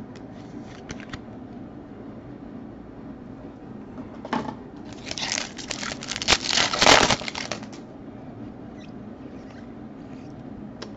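Plastic wrapper of a trading card pack being torn open and crinkled by hand, a burst of crackly rustling from about four seconds in that is loudest near seven seconds, then dies away.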